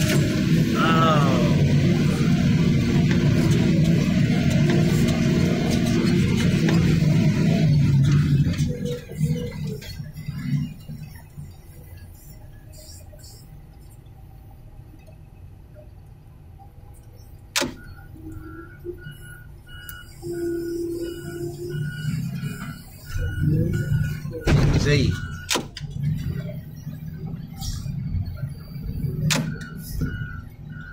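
Grapple loader's engine and hydraulics running, with a rising squeal about a second in; the machine noise drops away about eight seconds in. The quieter stretch after holds a steady beeping chime, about two beeps a second, and a few knocks and thumps.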